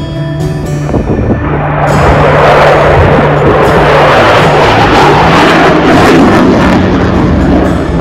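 Background music with a steady bass line, joined about two seconds in by the loud noise of a twin-engine F/A-18 Hornet jet fighter passing in a display. The jet noise drops away near the end.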